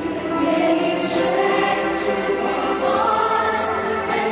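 A choir singing, with long held notes and the hiss of sung consonants every second or so.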